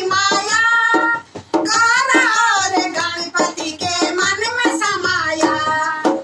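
Two women singing a Garhwali devotional bhajan together to dholak accompaniment, the drum strokes under their voices, with a short break in the singing about a second and a half in.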